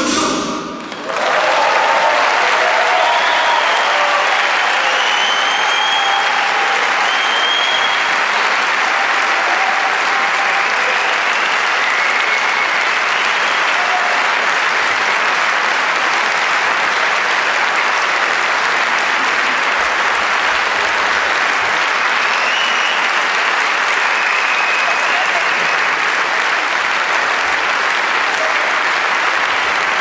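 A large audience applauding steadily and densely, filling the hall.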